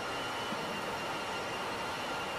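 Steady, even machinery drone of a container ship's engine room with its diesel generator sets running, with a couple of faint steady high whines on top.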